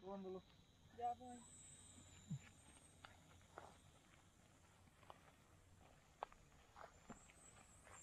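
Faint, scattered footsteps on a dirt path through grass, a few soft irregular steps, with brief distant voices near the start.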